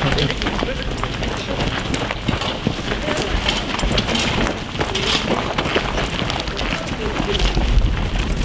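Footsteps of several people walking briskly on a dirt and gravel road, a busy run of crunching steps.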